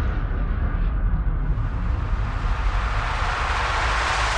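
A rushing, rumbling sound effect from a TV programme's animated title sequence, with a heavy low end. It thins for a moment about a second in, then swells again.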